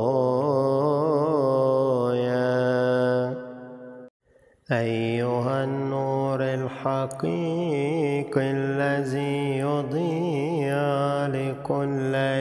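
A voice chanting a slow melismatic hymn, with long held notes whose pitch wavers and ornaments. The chant fades out a little past three seconds in, and after a short silence a new phrase starts abruptly just before five seconds in.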